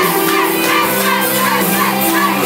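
Loud Neapolitan neomelodic pop music playing, with a packed crowd cheering and shouting over it.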